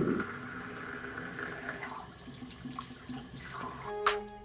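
Bathroom sink tap running steadily.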